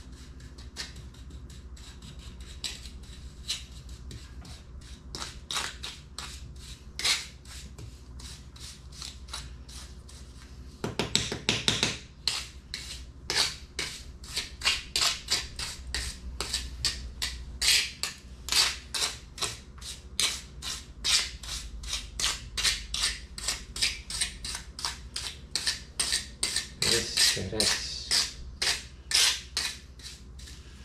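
Small steel trowel scraping and smoothing wet cement mortar over a patch in a tiled floor, in short repeated strokes. The strokes come slowly at first, then faster and louder from about a third of the way in, about two a second.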